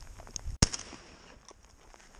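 A single shotgun shot, short and sharp, about half a second in, with a few faint ticks around it.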